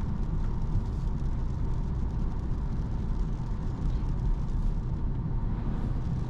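Steady interior noise of a 2024 Opel Corsa driving on a wet road: a low rumble from the tyres and road with the 1.2-litre three-cylinder engine running underneath. It is surprisingly silent for a small car.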